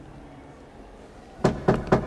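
Three quick knocks on a door near the end, answered at once by a call to come in.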